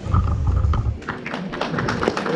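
A low thud and rumble, then an audience starts clapping about a second in.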